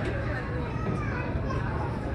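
Passengers' voices, children among them, chattering over a low steady hum from the ferry underfoot.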